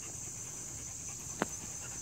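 Steady high chirring of insects, with a single short click about one and a half seconds in.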